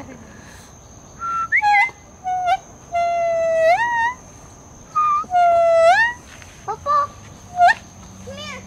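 A green leaf held against the lips and blown like a reed, sounding a run of clear, whistle-like notes. Short notes alternate with two long held ones, and each long note slides upward at its end.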